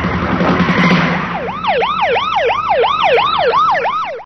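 Car engine and tyre noise, then from about a second and a half in a car alarm siren whooping rapidly up and down, about three sweeps a second.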